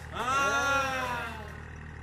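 Farm tractor engine running steadily at low speed, with a drawn-out call, falling in pitch over about a second, just after the start.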